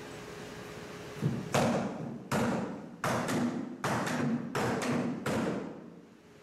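A run of about ten irregular thumps, each trailing off in a hiss, starting about a second in and ending just before the end, over a faint steady hum.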